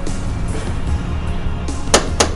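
Background film music, with one sharp knock of a metal door knocker striking the door near the end.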